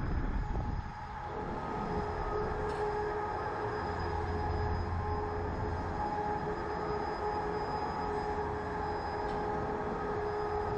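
Slingshot ride machinery running: a steady mechanical hum with a constant high whine, over a low rumble that swells in the middle.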